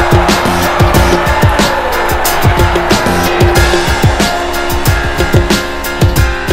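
Background music with a steady beat and deep bass notes that drop in pitch.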